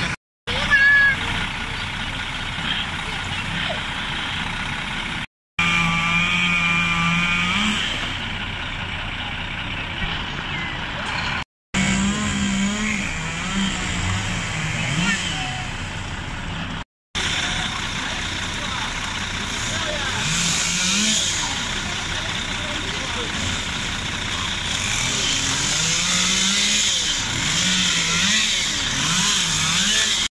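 Heavy truck engine running, its revs rising and falling as a truck-mounted crane works, with voices talking over it. The sound cuts out briefly four times.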